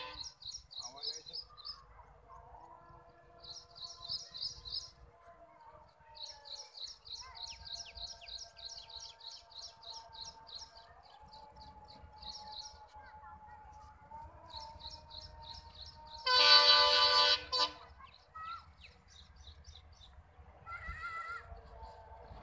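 A bird chirps in quick high runs, over faint steady tones. About two-thirds of the way in, a loud multi-tone diesel locomotive horn sounds once for about a second and a half.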